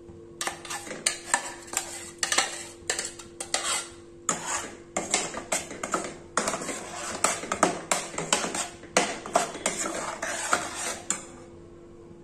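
Steel spoon scraping thick blended paste out of a steel jar and then stirring it in a stainless steel kadai: quick, irregular metal-on-metal scrapes and clinks that stop about a second before the end.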